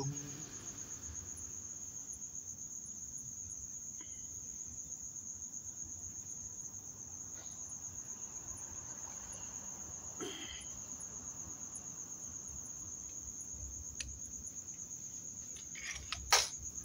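A cricket trilling steadily at a high pitch in a fast, even pulse. There is one faint click near the end.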